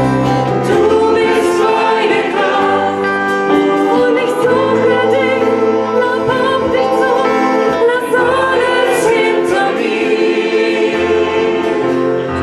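Mixed choir singing through microphones in sustained, held chords, over a low line that moves to a new note every second or two.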